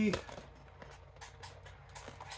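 Faint handling of a cardboard trading-card box: a few light clicks and rubs as it is turned over in the hands. The end of a spoken word trails off at the start.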